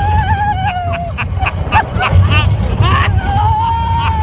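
Roller coaster riders screaming: a long held scream, then short shrieks and laughs, and another long scream starting about three seconds in, over a heavy low rumble of wind on the microphone.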